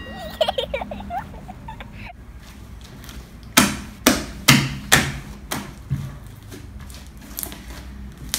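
Hands squeezing and pressing a large wad of pink slime on a wooden table, giving a run of about six sharp, loud smacks roughly half a second apart, starting around the middle.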